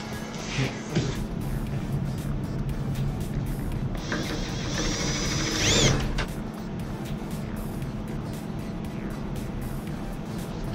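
Background music over a drill boring out a stuck bolt in the steel housing of an old Delco-Remy starter. The drill's whine swells and climbs in pitch about four seconds in, then eases off about two seconds later.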